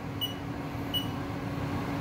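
Two short, high beeps from a CNC mill's control-panel keypad as keys are pressed, one near the start and one about a second in, over a steady low hum.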